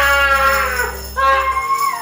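A woman screaming and wailing in two drawn-out cries, the first sliding down in pitch, over background music with jingling percussion.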